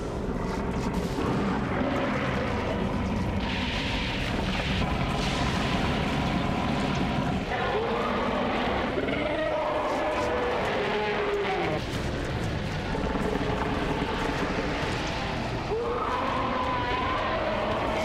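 Cartoon giant ape monster's drawn-out roars and growls over a continuous deep rumbling sound effect. The roars rise and fall, first about halfway through and again near the end.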